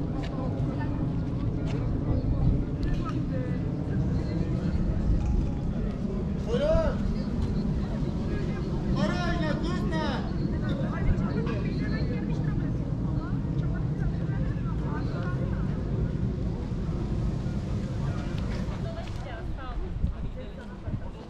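Outdoor city ambience: a steady low rumble of traffic with people's voices passing, and a couple of louder calls about seven and nine seconds in.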